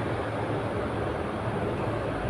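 Steady background noise, a low rumble with hiss, unbroken and without events.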